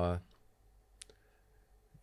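A man's voice trailing off, then a pause with low room tone and one short, faint click about a second in.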